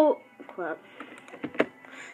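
The last word of a boy's speech trailing off, then a short murmured vocal sound with a falling pitch and a couple of sharp clicks about a second and a half in.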